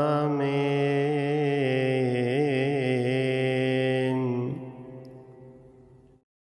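A long, drawn-out chanted 'Amen' ending an Arabic Coptic Agpeya psalm prayer, the voice held on a wavering melody over a steady low drone. It fades away from about four and a half seconds in.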